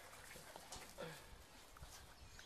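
Faint, soft crunching of a horse chewing hay, a few scattered crunches.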